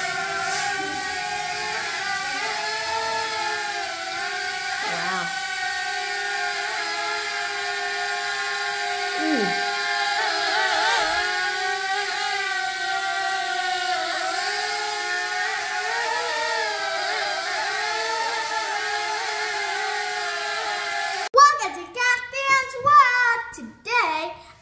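Sharper Image Air Racer 77 toy quadcopter's four small propellers whining steadily in flight, the pitch wavering a little as it holds and adjusts its hover. The whine cuts off suddenly about 21 seconds in, and a child starts speaking.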